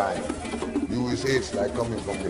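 A man talking: speech only.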